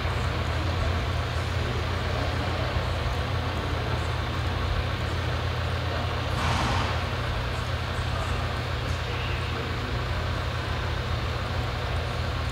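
Steady low rumble of indoor arena background noise, with one brief hiss about six and a half seconds in.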